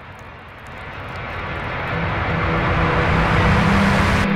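A rushing, wind-like swell of noise that grows steadily louder, with a low droning hum coming in under it, building up into ambient music.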